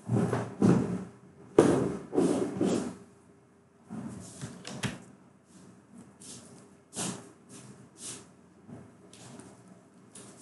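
A series of knocks and bumps: several loud ones close together in the first three seconds, then fainter single knocks every second or so.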